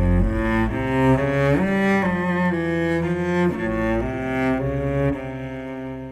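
Cello bowed in its low register near the bottom C, playing a slow line of separate notes that change pitch about every half second. The last note fades away near the end.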